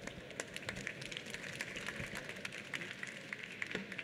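Light, scattered applause from a small audience: individual hand claps, fairly faint.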